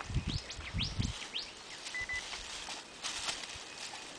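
Birds calling in the surrounding forest: several quick sweeping chirps in the first second and a half, a short steady whistled note about two seconds in, and more calling around three seconds in. A low rumble on the microphone during the first second.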